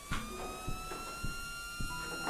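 A siren wailing, its pitch rising slowly and then levelling off, over soft knocks about every half second.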